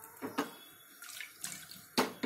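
Brief splashes and sloshing of water in an aluminium cooking pot: one louder splash a quarter-second in, then a few smaller ones in the second half.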